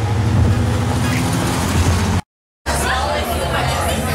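Street traffic noise with a steady low engine hum, cut off abruptly a little past halfway. After a brief silence, the babble of voices in a restaurant dining room follows.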